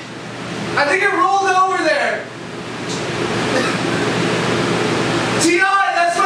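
A man wailing and groaning in pain, his voice falling in pitch, after cutting off his finger. In between comes about three seconds of loud, steady hiss.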